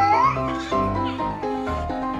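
Background music, with a long rising cat meow that ends shortly after the start.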